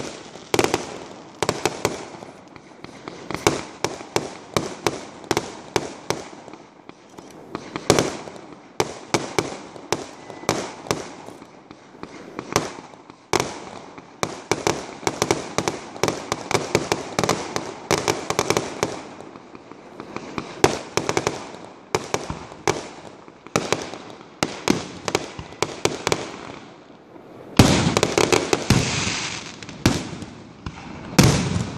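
Aerial firework shells bursting in a rapid, continuous string of bangs, with a denser, louder barrage near the end.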